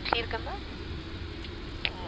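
Steady low rumble of an Airbus A330-200 flight deck while the aircraft taxis on idle engine power, with a single short tick near the end.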